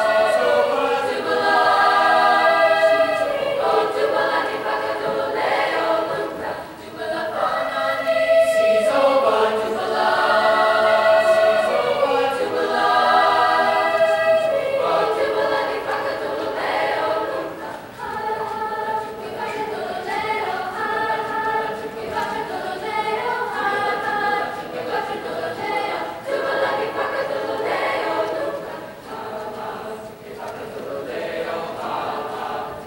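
A mixed-voice chamber choir singing a South African folk song in several parts, in rhythmic phrases with short breaks between them.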